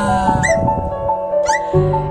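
Background music with sustained tones and a repeating melody note. Two short high-pitched squeaks come through, about half a second and one and a half seconds in.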